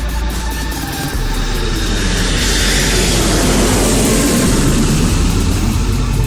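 Electronic music over a steady deep bass, with a whooshing noise sweep that swells about two seconds in and falls in pitch like a passing jet.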